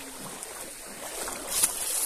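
Cattle wading through a shallow river, their legs sloshing and splashing in the water, with a louder splash near the end.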